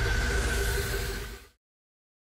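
Outro logo sting: electronic music with a rising whoosh that cuts off suddenly about one and a half seconds in, then dead silence.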